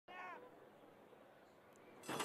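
Near silence, with one short faint cry falling in pitch right at the start.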